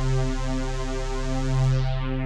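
Drambo's Dust Pad B synth pad preset holding one sustained low note, steady throughout, its brightness thinning slightly near the end.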